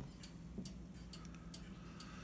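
Faint, light ticks of an Apple Pencil tip tapping on an iPad's glass screen, a few irregular taps over a low steady hum.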